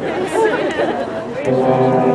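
Indistinct chatter of voices, then about one and a half seconds in a jazz band's brass section comes in with a held chord, louder than the talk.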